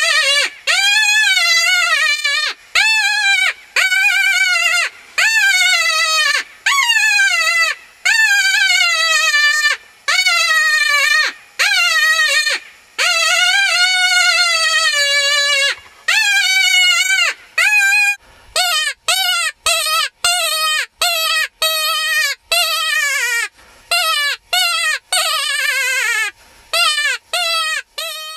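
Mouth-blown fox call (predator call) imitating a distressed woodpecker: a run of loud, wavering high cries, each falling in pitch at its end. They are about a second long at first, then come shorter and quicker, about two a second, for the last ten seconds.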